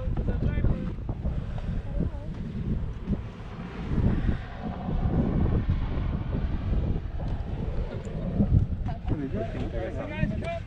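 Wind buffeting the microphone as a low, uneven rumble, with faint voices in the background near the start and end.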